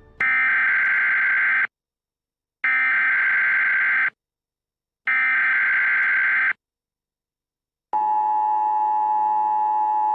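Emergency Alert System tones: three screeching data bursts of the alert header, each about a second and a half long with a second's gap between them. About eight seconds in, the steady two-tone attention signal starts and holds.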